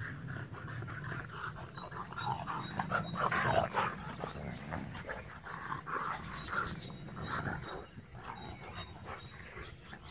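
Two dogs growling at each other as they play-fight, in uneven bursts that are loudest about three to four seconds in.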